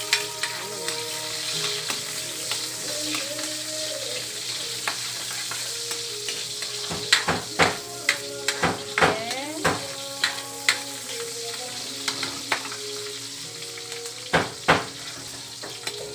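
Chopped onion sizzling steadily in hot oil in a steel wok. Through the middle and near the end, a metal spatula stirs it, striking and scraping the wok in a run of sharp clicks.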